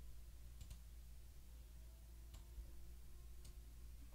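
Near silence: room tone with a faint low hum and four faint clicks of a computer mouse. Two clicks come close together about half a second in, one comes past two seconds, and one comes near the end.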